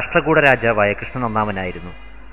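Speech only: a man narrating in Malayalam.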